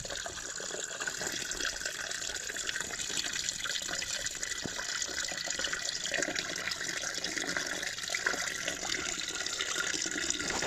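Water running steadily from a hose onto a cast-iron drain grate and splashing down into the gully.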